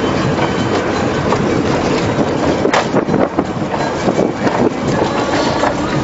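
Road noise heard inside a vehicle driving on a rough gravel road: steady engine and tyre rumble with constant rattling and knocking from the body, and one sharp click a little before the middle.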